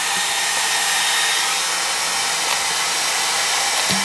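Handheld hair dryer (blow dryer) running steadily: a constant rush of blown air with a faint steady hum.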